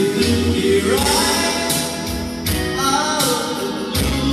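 Karaoke: a man singing into a microphone over a backing track played through a loudspeaker, the sung melody rising and falling above the accompaniment.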